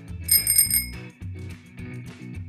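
A bicycle bell rung in a quick run of rings early in the first second, over background music with a steady bass beat.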